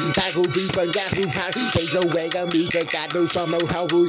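Hip hop track: a rapped vocal over a steady, pulsing beat.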